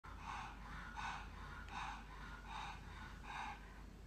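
A pug's noisy breathing: five breathy huffs, evenly spaced a little under a second apart.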